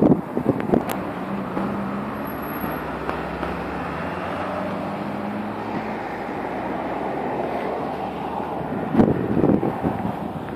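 Road traffic on a city street: a steady rush of passing cars, with a low engine hum standing out from about one to six seconds in.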